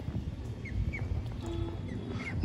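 Ducks and ducklings calling quietly in a pen: two faint, short high peeps about a second in, over low background noise.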